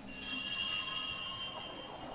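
A small altar bell struck once, its high clear tones ringing on and fading away over about a second and a half.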